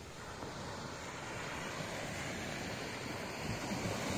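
Small waves breaking and washing onto the shore, mixed with wind buffeting the microphone: a steady rushing noise that grows gradually louder.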